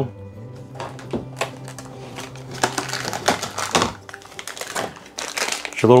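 Small plastic parts and packaging being handled by hand: irregular clicks and knocks from a plastic suction-cup mount, then the crinkling of a plastic bag holding a cord.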